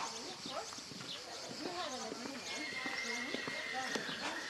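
A horse's hoofbeats on a sand arena surface, with people talking in the background. A steady high tone comes in about halfway through and holds.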